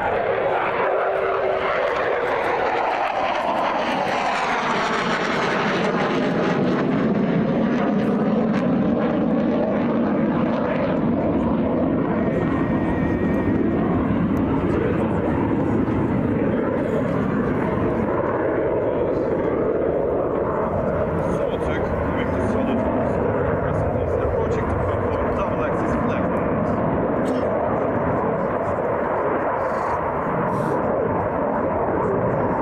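F-16 fighter jet's engine roaring continuously through a display manoeuvre. A whooshing, shifting tone in the first few seconds as the jet passes overhead.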